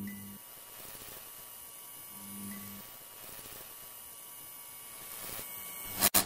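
Faint steady electrical hum over a low hiss, with a lower hum that sounds briefly at the start and again about two seconds in.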